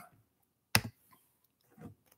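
A single short, sharp click a little under a second in, then a faint low sound near the end; otherwise a quiet room.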